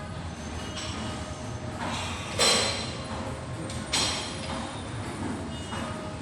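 Gym equipment: a steady low rumble with two loud clanks about a second and a half apart, each ringing briefly.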